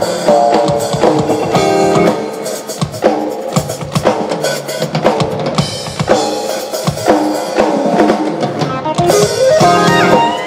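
Live band music: electric guitars and keyboard playing over a drum kit, with steady drum hits of kick, snare and rimshot running through.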